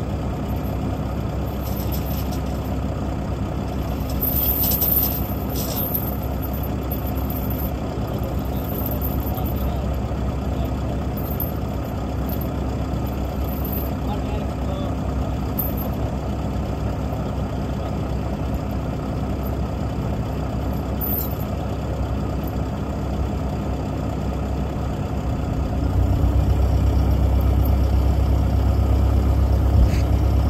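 Heavy diesel engine idling steadily. A deeper, louder engine sound comes in near the end.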